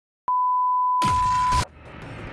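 A single steady electronic beep tone, held for about a second and a half. Over its last half second a loud rush of noise comes in, then the beep cuts off and quieter noise carries on.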